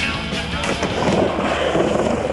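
Skateboard wheels rolling and carving on a halfpipe ramp, under rock music.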